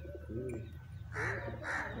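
Bird calls: two short, harsh calls about half a second apart in the second half, with a shorter, lower call about half a second in, over a steady low hum.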